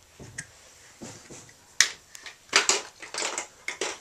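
An empty plastic drink bottle knocked and pushed about on a wooden floor by a toddler: a string of sharp hollow clatters and crinkles, starting about halfway in and bunching together toward the end.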